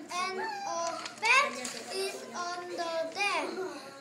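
A young child's voice reading an English tongue twister aloud, slowly, with long drawn-out syllables.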